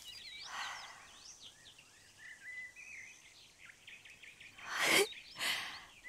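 Small birds chirping softly in the background, with a few short hissing bursts, the loudest about five seconds in.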